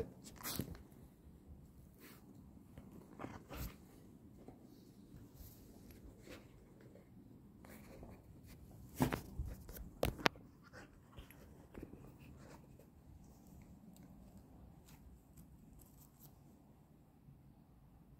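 A dog moving about and searching on a loose arena surface, faint scuffs and rustles, with a few sharp knocks about halfway through.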